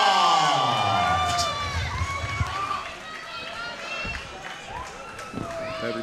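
A ring announcer's long, drawn-out call over the arena PA, its pitch sliding steadily down through the first two seconds. It gives way to crowd cheering and scattered shouts that die down.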